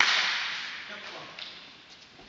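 A football struck hard: one sharp smack at the start that rings out in the sports hall's echo and dies away over about a second, followed by a couple of fainter knocks.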